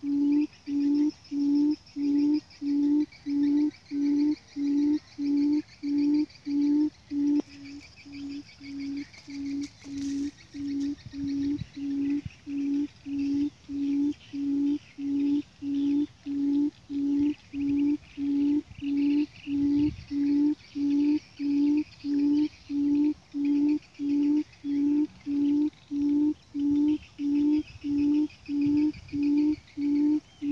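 A buttonquail's low hooting call, repeated steadily at about three hoots every two seconds. The hoots drop in loudness about seven seconds in, then build back up.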